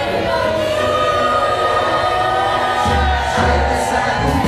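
Music with a choir singing long, sustained lines; deep bass notes come in about three seconds in.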